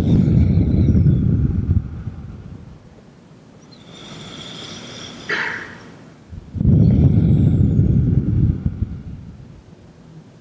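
Slow, deep breathing blown onto the microphone: two long exhales, each starting suddenly and lasting about two seconds, come through as a low rumble about six seconds apart, with a quieter inhale between them.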